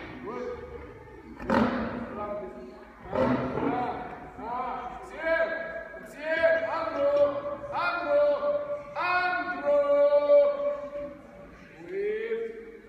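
A lion trainer's drawn-out shouted calls to his lions, repeated about once a second, each rising in pitch, overlapping and loudest near the end. Two sharp cracks of his whip come in the first few seconds.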